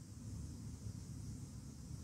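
Faint room tone with a steady low hum; no distinct sound event.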